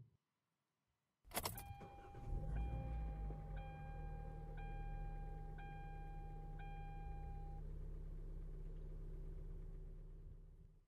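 Car engine starting about two seconds in and settling into a steady idle, after a click. Over it a dashboard warning chime dings about once a second for several seconds, then stops.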